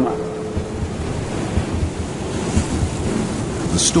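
Steady rushing noise of the open sea, with an irregular low rumble underneath.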